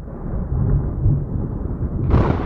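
Cartoon thunder sound effect: a deep, steady rumble with no music over it.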